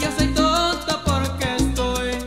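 Salsa music with a deep bass line under a male voice singing in Spanish.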